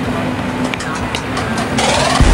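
Steady background din with indistinct voices mixed in, like busy outdoor ambience.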